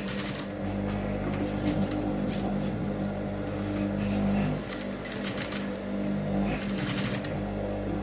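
Sewing machine stitching a zipper onto a fabric flap in several short runs of rapid needle clatter over a steady motor hum.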